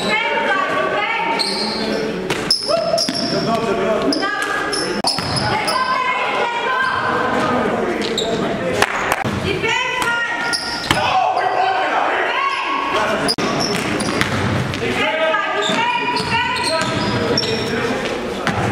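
Live basketball game on a gym hardwood floor: a basketball bouncing, sneakers squeaking and players calling out, all echoing in a large hall.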